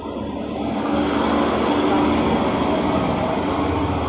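A motor vehicle's engine running nearby, growing louder over the first second and then holding steady.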